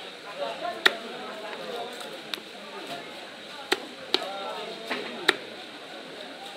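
Large knife chopping rohu (rui) fish into steaks on a wooden chopping block: about six sharp chops, unevenly spaced.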